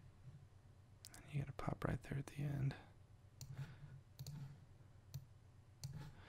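Computer mouse clicking several times at a desk as a 3D animation program is worked, with a man muttering quietly in between.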